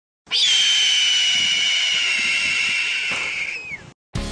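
A hawk's screech used as a sound effect: one long, high call lasting about three seconds that glides down in pitch as it fades near the end.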